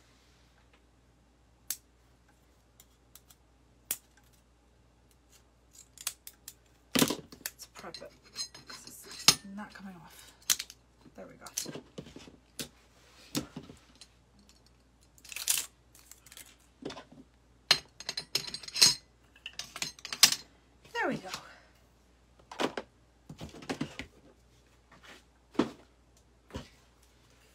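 Irregular metallic clicks and clacks from a floral steel pick machine and hand tools as artificial greenery stems are handled and picked, sparse at first and then frequent from about six seconds in, with several sharper snaps.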